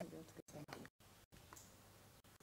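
A short spoken 'yeah' and a few faint words, then near silence: room tone with a few faint clicks. The sound cuts out completely for an instant several times in the first second and a half.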